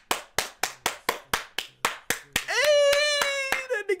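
One person clapping hands rapidly and evenly, about four claps a second for some two and a half seconds. Then a long held vocal cry on a steady pitch, louder than the claps, with a couple more claps near the end.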